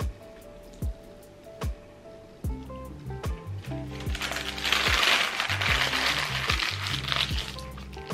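Background music with a steady beat; from about halfway through, a paper sandwich wrapper is crumpled into a ball for about three seconds, louder than the music.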